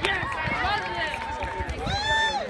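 Horses' hooves clopping on asphalt, with onlookers' voices calling out over them.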